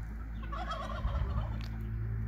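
A domestic fowl's call, a short warbling burst lasting about half a second, heard over a steady low hum.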